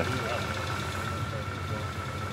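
A car engine idling steadily after being started: an even low rumble with a thin steady whine above it.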